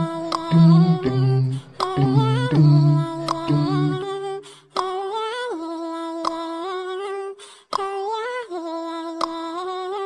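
Background music: a wordless hummed vocal melody of held, gliding notes. A lower accompaniment plays under it for the first four seconds, then the voice carries on alone.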